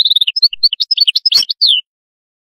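European goldfinch singing a fast twittering phrase of quick chirps and short trills that breaks off shortly before the end, with a sharp click about a second and a half in.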